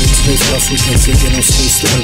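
Hip hop track: a rapped vocal over a drum beat.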